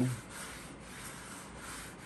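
A cloth rag dampened with alcohol being rubbed steadily back and forth over the surface of plastic slot car track, a soft continuous wiping sound.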